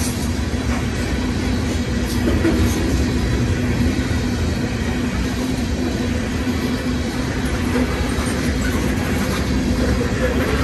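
Covered hopper cars of a freight train rolling past: a steady rumble of steel wheels on rail with a constant low hum.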